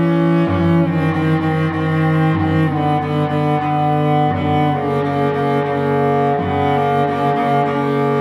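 Solo cello, bowed, playing long sustained notes that change about every two seconds.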